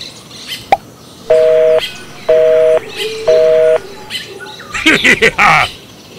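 Three short, loud two-tone horn honks, evenly spaced about a second apart, played as a sound effect. Near the end comes a high, sped-up cartoon-style laugh.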